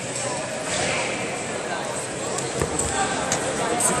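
Echoing sports-hall ambience of indistinct voices, with a few short squeaks and a thump about two and a half seconds in, typical of wrestlers' shoes and feet on the mat.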